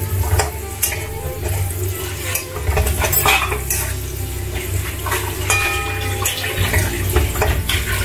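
Flat metal spatula scraping and knocking irregularly against an iron kadai (wok) while stir-frying capsicum strips, over a light sizzle of frying. A steady low hum runs underneath, and a brief ringing note sounds a little past halfway.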